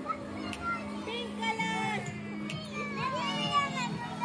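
Young children calling out and squealing as they play, with a song playing in the background.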